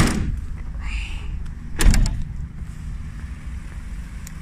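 The van's double rear cargo doors slammed shut one after the other: two heavy metal door thumps about two seconds apart, over a steady low rumble.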